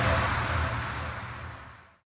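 Vinahouse dance remix fading out: a low bass pulse and a noisy high wash die away steadily to nothing by the end.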